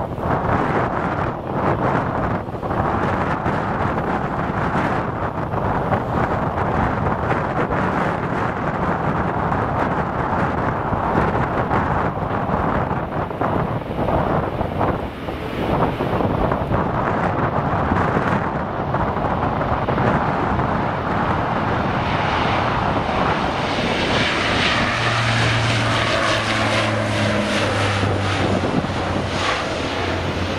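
Twin-engine turboprop aircraft passing on the runway. A rising engine and propeller drone builds from about two-thirds of the way in, with a steady low propeller hum, and is loudest near the end.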